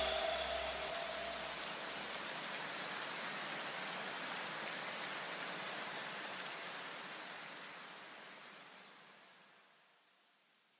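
Even hiss of filtered white noise, a transition effect in the edited music soundtrack. The last echo of the music dies away at the start, and the hiss fades out to silence near the end.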